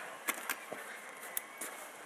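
Quiet background hiss with a few faint, sharp knocks, about five spread over two seconds.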